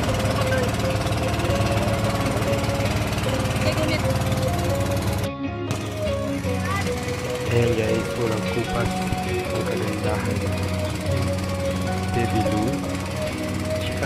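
An outrigger bangka boat's engine running with a fast, even pulse, mixed with music and voices. The sound drops out for a moment about five seconds in.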